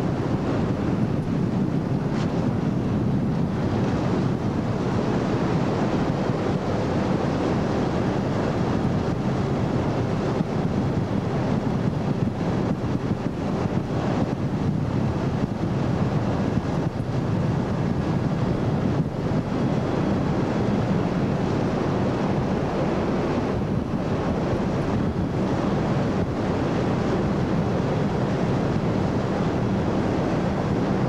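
Ski Nautique tow boat running steadily at speed, with wind buffeting the microphone and water rushing past, a constant noise that does not let up.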